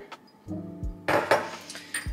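A small stainless steel jigger clinking against a glass drink mixer as syrup is poured from it, then set down on the countertop, with a few sharp clinks and knocks in the second half.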